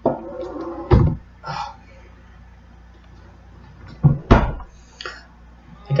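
Handling knocks close to the microphone: a dull thump about a second in and two more just after four seconds, with a brief faint murmur at the start.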